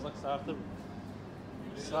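People's voices talking briefly, over a steady low background hum.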